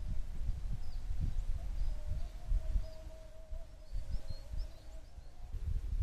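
Open-field outdoor ambience: an uneven low rumble of wind on the microphone, with faint, scattered bird chirps and a faint wavering hum through the middle.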